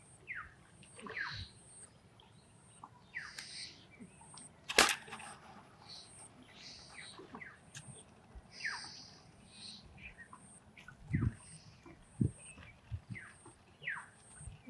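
Birds chirping in short, scattered calls over a faint, evenly repeating high note. A single sharp click about five seconds in is the loudest sound, and a few low thumps come near the end.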